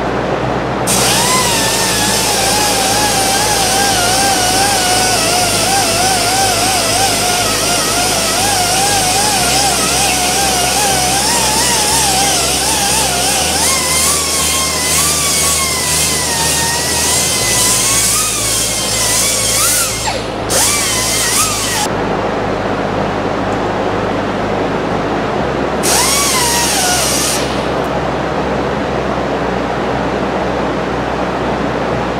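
A high-pitched power tool whine with hiss, its pitch wavering and sliding as it runs, for about twenty seconds and again briefly near the end. Background music with a bass line plays under it throughout.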